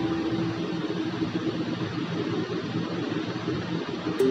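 Steady, even background noise like a fan or hiss, with a held low note fading out in the first half second as the music breaks off.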